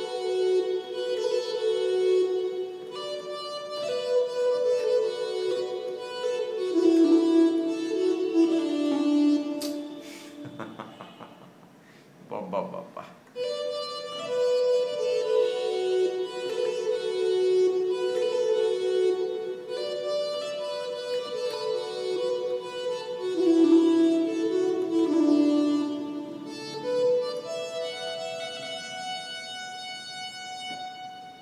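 Single-note melody played on a MIDI keyboard controller through a reedy synth patch, in sustained, stepping notes of the pentatonic Mohana raagam. The phrase plays once, breaks off near the middle with a click, then repeats.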